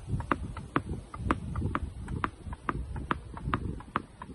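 Tennis ball dribbled on asphalt with a tennis racket: a steady run of sharp pocks as the ball strikes the pavement and the racket strings in turn, about two bounces a second.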